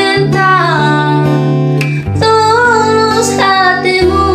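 A woman singing an Indonesian pop song over acoustic guitar accompaniment, holding long notes that slide in pitch, with a short break between phrases about two seconds in.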